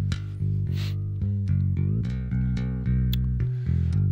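Ample Bass P, a sampled electric bass plugin, playing a bass line of sustained plucked notes. Its articulations and pitch-bend slides of up to an octave are triggered from the piano roll.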